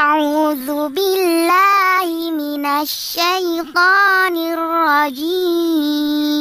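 A child's voice singing a wavering melody in phrases, with short breaks between them, then holding one long steady note near the end.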